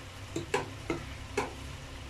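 Onion-tomato masala frying gently in a pan, a low steady sizzle with the oil separating out, broken by four short light clicks.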